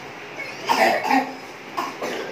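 Someone coughing: a cough about two-thirds of a second in, then a shorter one near the end.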